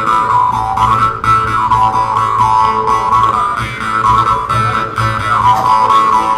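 Jew's harps (mouth harps) playing a polka together: a continuous twanging drone, with the melody picked out in overtones that the players shape with their mouths, sweeping up and down.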